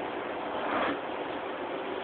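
Steady background hiss with a brief soft rustle about three-quarters of a second in.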